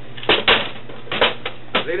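A few short clatters and knocks as things are handled at a shop counter, about five in under two seconds, over a steady low electrical hum.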